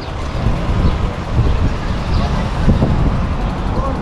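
Road traffic with a car driving past, mixed with low wind rumble on the microphone and faint voices.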